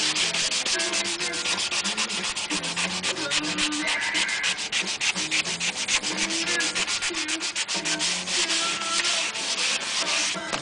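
Sandpaper rubbed by hand along a Telecaster guitar neck in fast back-and-forth strokes, several a second. The neck is being sanded down to key and blend the old lacquer so a new lacquer coat will bond.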